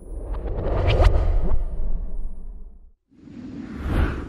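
Two whoosh transition sound effects with a deep low rumble: a long swell that builds to a peak about a second in, with a few short ticks in it, and fades out by three seconds, then a second, shorter whoosh that rises to a peak near the end.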